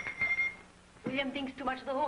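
Film dialogue: a woman speaking, with a short lull before speech resumes about a second in. A thin, high, steady tone sounds for about half a second at the start.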